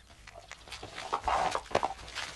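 A farm animal's call, loud and brief, about a second in, followed by a shorter second burst.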